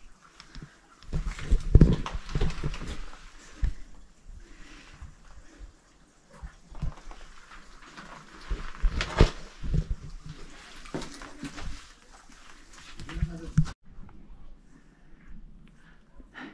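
Irregular footsteps, scuffs and knocks of a hiker picking her way over rock and shallow water in a mine entrance, with heavier thumps about two seconds in and again around nine and thirteen seconds. Shortly before the end the sound drops away to quieter outdoor ambience.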